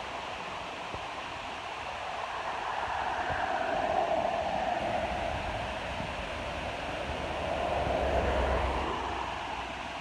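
Steady outdoor rushing noise that swells and fades twice, first a few seconds in and again near the end, with a low rumble under the second swell.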